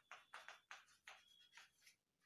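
Chalk writing on a blackboard: a quick run of about ten faint, short scratches as letters are written, with a faint high squeak of the chalk twice.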